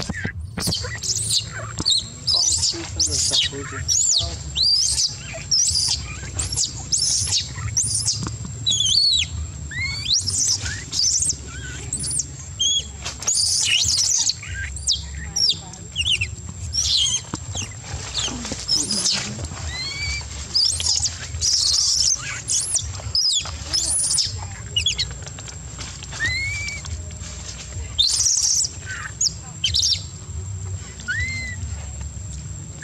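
Newborn long-tailed macaque crying in distress: a long run of short, high-pitched cries, each rising and falling in pitch, coming one after another.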